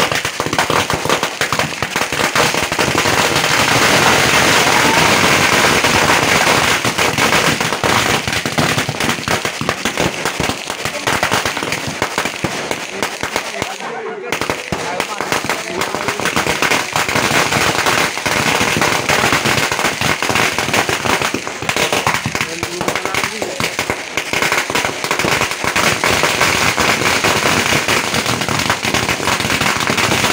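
Firecrackers and fireworks going off in a dense, continuous run of rapid crackling bangs, with a brief lull about 14 seconds in.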